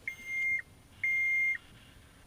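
John Deere 316GR skid steer's cab panel beeping twice as the start button is pressed: two steady high beeps about half a second each, a second apart. The engine is not yet cranking.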